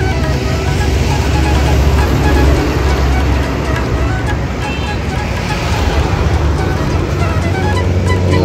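Steady low rumble of road traffic passing close by, with music playing faintly underneath.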